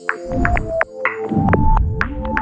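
Electronic intro sting: a deep throbbing bass that swells about a second in, under a quick run of sharp clicks and short synth tones.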